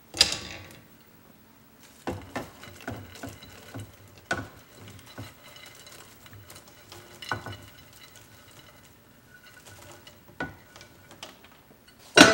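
Dry bread cubes tipped from a ceramic baking dish into a pot of broth: soft rustling and patter with scattered knocks and clinks of dish and utensils against the pot. A sharp knock comes right at the start.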